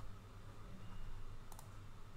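A quick double click about one and a half seconds in, over a low steady hum.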